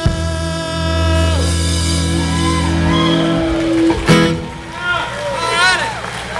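A country band of upright bass, acoustic and electric guitars and drums holds the song's final chord, which dies away and is closed by a last sharp hit about four seconds in. Voices whoop and call out over the ending.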